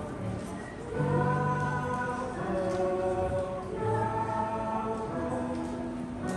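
A group of voices singing a song together over instrumental accompaniment, in held notes that change about once a second.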